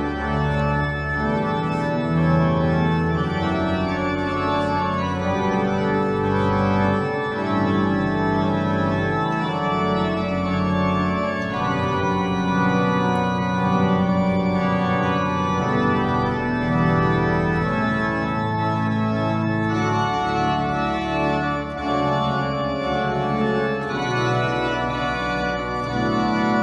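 Pipe organ playing held chords over a sustained bass line, the chords changing every second or two.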